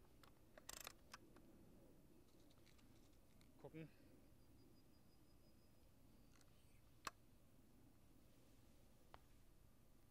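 Near silence with a few faint clicks and one sharper click about seven seconds in, from a Diana 54 Airking Pro side-lever spring air rifle being handled and its lever and breech worked.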